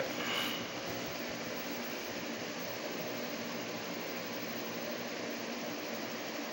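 Steady background hiss of room noise, even and unchanging, with nothing else standing out.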